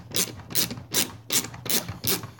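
Handheld socket wrench cranking a shop-built router lift to raise the router bit: a short rasping ratchet stroke about two and a half times a second, five strokes in a row.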